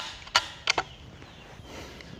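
Three sharp metallic clicks in the first second from the bolt of a single-shot Apollo stainless PCP air rifle being worked by hand, as the rifle is loaded for a shot.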